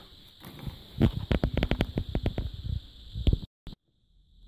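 Rapid clattering knocks and clicks from handling the opened LCD monitor's metal chassis and circuit board, about a dozen over two seconds. The sound cuts off abruptly near the end.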